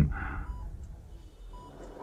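Hospital heart monitor beeping: two short, faint electronic beeps of the same pitch, about a second apart.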